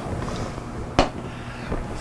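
Low steady rumble of background noise, with one sharp knock about a second in as a small tasting glass is set down on the table.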